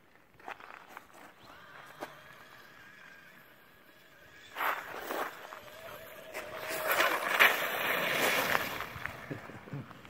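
Traxxas Stampede VXL radio-control truck driving, its brushless electric motor whining faintly over tyre noise. It is faint for the first few seconds and grows louder in the second half, loudest a little past the middle.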